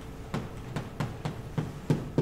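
Chalk tapping and scraping on a blackboard as someone writes: a quick, uneven run of sharp taps, about three or four a second.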